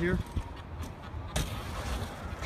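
BMX bike riding on a concrete skate park ramp over a low rumble, with a sharp knock about a second and a half in and a fainter click just before it.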